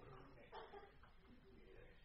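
Near silence: room tone with one faint, short vocal sound about half a second in.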